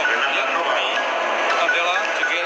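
A voice over background music, thin and narrow in sound, like a loudspeaker heard through a recording.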